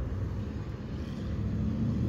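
Steady low engine hum of a motor vehicle running at an even idle, with no change in pitch.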